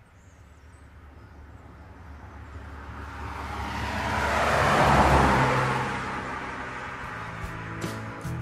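Intro sound effect: a whoosh that swells from near silence to a loud peak about five seconds in, then fades, with a low hum underneath.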